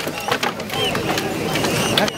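Several voices talking and calling out over one another, with a few short, sharp knocks.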